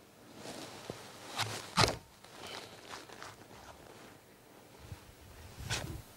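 A metal apple corer being pushed and twisted through a cooking apple, with soft, irregular crunching and scraping of the flesh. A few sharper crunches come about two seconds in and just before the end.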